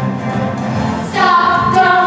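A stage-musical song: a backing track in the low register, then young voices come in about a second in, holding a sung note.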